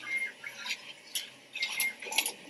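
Automatic bag filling and packing machine running: irregular metallic clicks and clatter from its moving parts, with a short high squeak near the start and again near the end.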